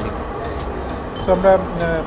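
A man's voice speaking briefly about a second in, over a steady low background rumble.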